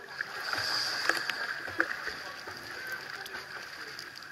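Swimming-pool water lapping and splashing close to the camera, a steady wash of small splashes, a little louder in the first couple of seconds.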